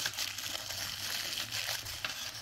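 Thin plastic wrapping crinkling and rustling in the hand as it is worked off a set of two-stroke chainsaw piston rings, without a break, with a faint low hum underneath.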